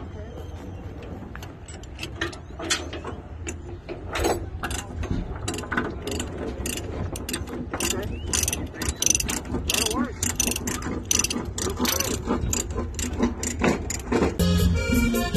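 Ratchet tie-down being cranked to secure a load on a flatbed trailer: a run of sharp clicks, coming quicker and louder from about four seconds in, over a low steady rumble.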